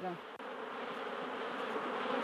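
Night insects buzzing in a steady, dense chorus that grows slowly louder.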